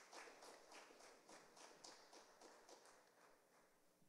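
Faint clapping, about four claps a second, dying away near the end.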